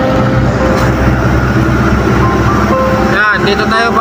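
Motor vehicle driving on a city road: a steady low rumble of engine and road noise.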